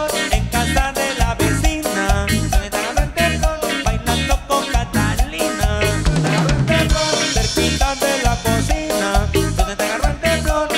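Live tropical dance band playing an instrumental passage with a steady dance beat: drum kit and hand drums, electric guitar, electric bass and synthesizer keyboard together, with no vocals.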